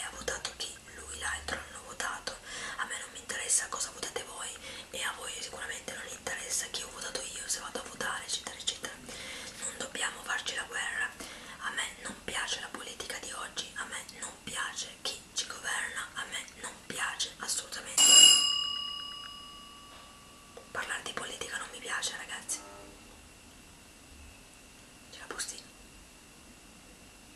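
A woman whispering continuously. About eighteen seconds in, a single sharp bell-like ring, the loudest sound here, fades out over two to three seconds. After it comes a little more whispering, then a quieter stretch.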